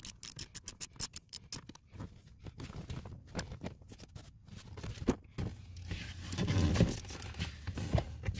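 Small hand ratchet clicking rapidly as it drives a Torx bolt in. The clicks slow and thin out after about two seconds, giving way to scattered clicks and handling noise.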